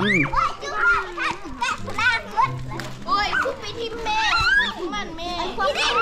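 Several children's voices chattering and calling out over one another, high-pitched and overlapping.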